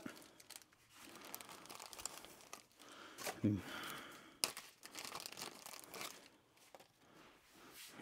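Faint crinkling and tearing of a plastic parts bag being opened, with small clicks and rustles of a new nylon part being handled at the clutch; a brief grunt about three and a half seconds in.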